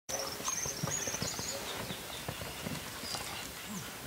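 Hooves of a young Lusitano horse thudding on a sand arena at a trot, in an uneven run of soft beats. Quick runs of bird chirps sound over them in the first second and a half.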